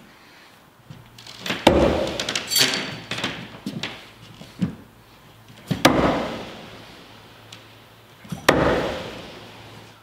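Throwing knives striking a wooden target three times, each a sharp thunk about three to four seconds apart followed by a ringing tail echoing in a small room.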